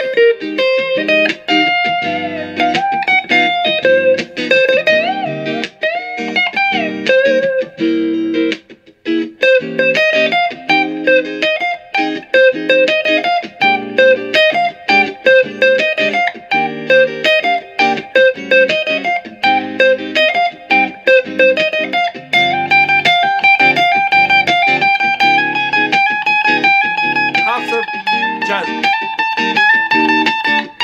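Gibson Flying V electric guitar played through a 1967 Fender Pro Reverb tube amp, improvising single-note jazz lines over a chord-progression backing. In the last third the line climbs step by step with longer held notes.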